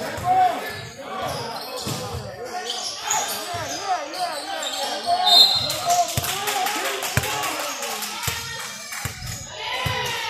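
Basketballs bouncing on a hardwood gym floor as players dribble, a run of low thumps under many overlapping voices talking and calling out in an echoing gym. A brief high squeak comes about five seconds in.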